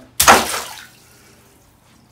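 FPV racing quadcopter dropped into a bathtub of water: one loud splash about a quarter second in, dying away within about half a second.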